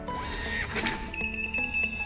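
Zywell thermal receipt printer printing a slip: a rough feed noise, then a high, slightly pulsing whine lasting most of a second, over background music.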